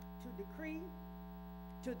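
Steady electrical mains hum in the recording, with a faint voice heard briefly about half a second in.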